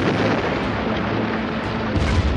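Rock blasting: a dense, continuous rumble of explosions and falling rock, with background music underneath.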